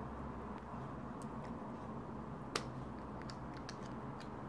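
Faint clicks and light taps of a coin against the plastic battery cap of a Cateye Strada Wireless speed sensor as it is fitted into the cap's slot to twist it open, with one sharper click about two and a half seconds in. A low steady hum runs underneath.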